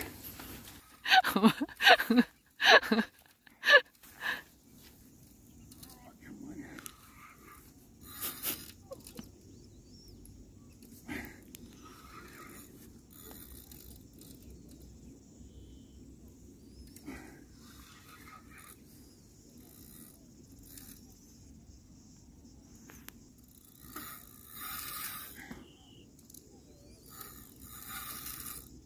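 A man laughing in a few short bursts, then a long quiet stretch of faint low wind noise with a few brief soft sounds.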